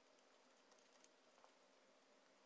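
Near silence with a few faint, light ticks a little under a second in and again about half a second later: the tip of a fine felt pen dotting marks onto tape wrapped around a doll's body.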